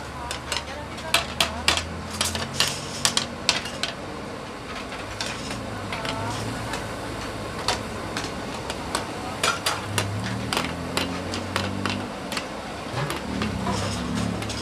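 Metal ladles and spatulas clinking and scraping against shallow metal pans in quick, irregular clusters, over the steady rush of high gas burners.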